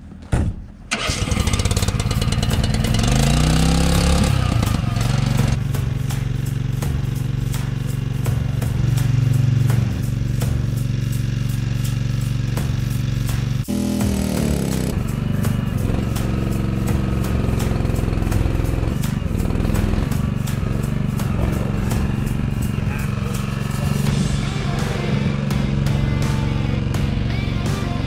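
Engine of a shed-delivery truck and hydraulic trailer rig running steadily, revving up about three seconds in and again about fourteen seconds in.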